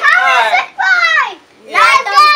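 Young children shouting in high-pitched voices: two long calls that fall in pitch, a brief pause, then another shout starting near the end.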